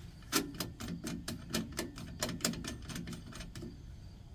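A quick, slightly uneven run of about fifteen sharp metallic clicks over some three seconds, made by hand-working a quick-release coupling on the front of a truck trailer. The clicks stop just before talk resumes.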